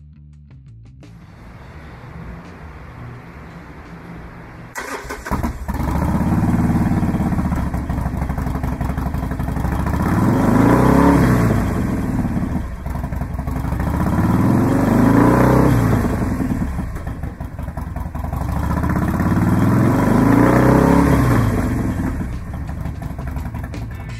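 2016 Harley-Davidson Sportster Roadster's 1200cc Evolution V-twin, fitted with a Vance & Hines exhaust, starting about five seconds in, then idling and being revved in four slow rises and falls.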